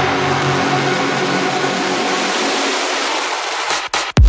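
Electronic dance music build-up: a wash of noise over held synth tones, with the bass draining away through the second half. It breaks off into a brief gap near the end.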